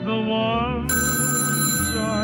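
A telephone ringing: a steady bell-like ring starts about a second in, over background music with a wavering melody.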